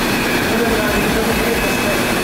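Powered roller conveyor running steadily as a cardboard box rolls along it.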